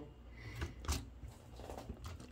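Faint handling of a plastic Lego Technic model, with a couple of light clicks about half a second and one second in.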